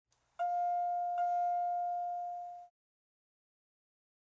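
Elevator arrival chime sounding two dings of the same pitch, under a second apart; the second rings on, fading, until it cuts off abruptly.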